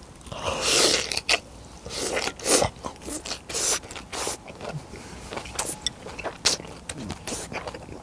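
A man eating close to the microphone: a noisy rush as he takes in a large mouthful near the start, then chewing with many short crunches and lip smacks.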